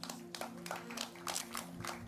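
Light, scattered clapping from a few people in a church congregation, with a soft sustained keyboard chord held underneath.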